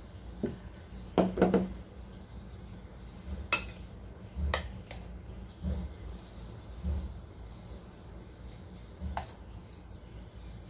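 Kitchen utensils clinking and tapping against steel and ceramic bowls as cake batter is spooned into a cake pan: a quick cluster of knocks about a second in, a sharp ringing clink near the middle, then a few softer, scattered taps.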